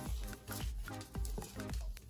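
Background electronic dance music with a steady beat, about two beats a second.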